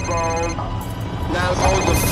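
Mobile phone ringing with a warbling electronic ringtone, in two bursts.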